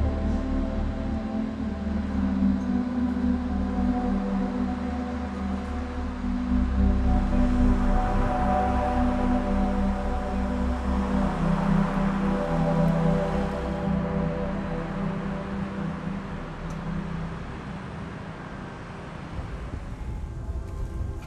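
Slow ambient background music with sustained low bass notes and long held chords, without a clear beat; it grows quieter over the last few seconds.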